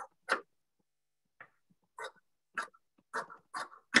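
Fabric scissors cutting through cloth in a series of short snips: one loud snip near the start, then a quicker run of snips in the second half.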